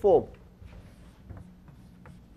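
Chalk scratching and tapping on a blackboard in a few short, faint strokes as characters are written.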